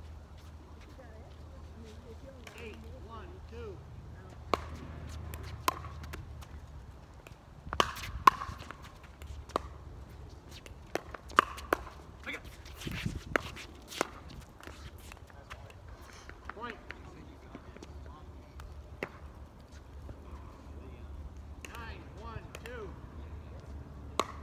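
A pickleball rally: paddles strike the hard plastic ball with sharp, short pops. There are a few single hits, then a quick run of exchanges in the middle, the loudest about eight seconds in.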